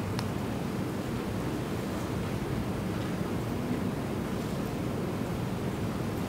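Steady background hiss and hum of room noise picked up by an open microphone, with no speech.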